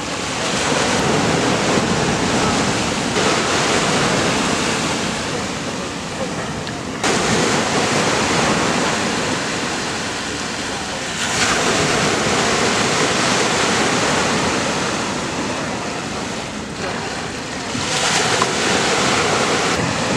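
Sea surf washing at the shoreline: a steady rushing hiss that swells and eases, stepping up suddenly about seven and eleven seconds in.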